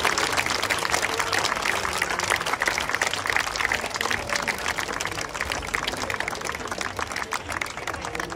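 Audience applauding: a dense patter of many hands clapping, easing off gradually toward the end.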